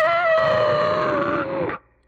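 An altered, high-pitched creature voice holding one long drawn-out cry, sinking slightly in pitch and stopping shortly before the end.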